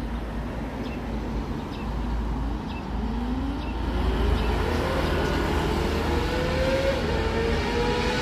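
Kawasaki ZX25R's 249 cc inline-four engine revving high in the distance, its note climbing steadily in pitch from about three seconds in and then holding high as the bike approaches, over a steady low background rumble.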